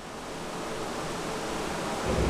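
Steady even hiss of room and microphone noise, with no distinct event, growing slowly louder.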